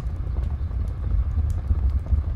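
Sound-designed logo sting tail: a steady low rumble with scattered sharp crackles, like embers and sparks crackling.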